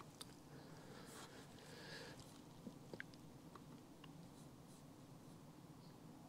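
Near silence: faint room tone with a few faint, scattered clicks and rustles.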